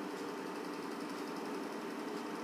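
Faint, steady background hiss with a low hum: room tone, with no event in it.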